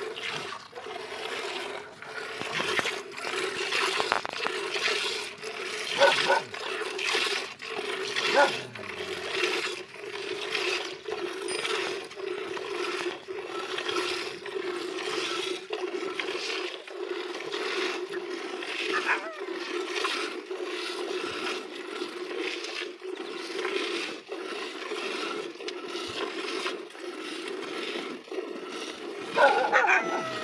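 Jets of milk squirting into a steel bucket as a water buffalo is milked by hand, in a steady rhythm of alternating squeezes. A brief louder sound comes near the end.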